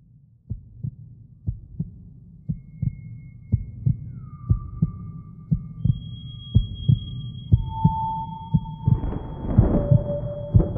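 Spooky Halloween sound-effect track: a heartbeat of paired low thumps about once a second over a low drone, with eerie high held tones gliding in one after another and a hissing swell near the end.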